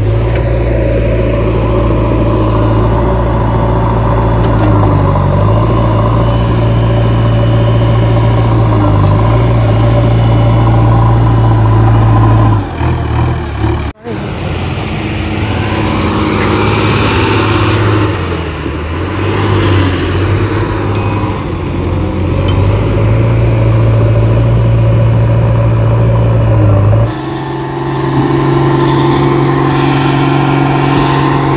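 Heavy diesel engines of earthmoving vehicles running. A steady engine note fills the first half and breaks off abruptly about halfway through. Then comes an engine whose pitch dips and rises, and from near the end a different engine note.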